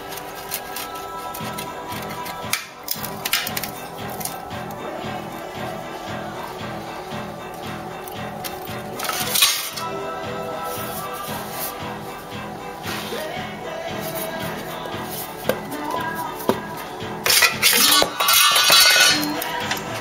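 Background music with a steady beat, over which come sharp metallic clinks of a hammer striking steel letter punches into a steel plate held in a vise: a few single strikes, then a loud cluster near the end.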